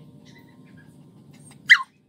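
A dog gives one short, high yip that falls sharply in pitch, near the end.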